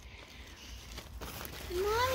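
Faint rustling and crinkling of a pop-up canopy's fabric top being handled, with a child's voice calling near the end.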